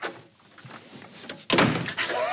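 A wooden interior door being opened, with a sudden knock about a second and a half in after a quiet stretch.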